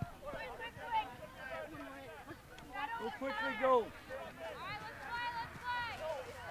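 Voices shouting and calling across an outdoor soccer field, too distant to make out words. The loudest calls come about three to four seconds in, followed by several high, rising shouts near the end.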